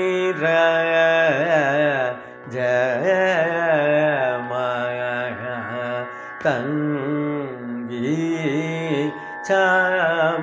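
A man singing the lyrics (sahitya) of a Carnatic varnam in raga Sudhadhanyasi, his notes gliding and oscillating in ornamented gamakas over a steady drone. The singing breaks off briefly about two seconds in, again near the middle and again near the end.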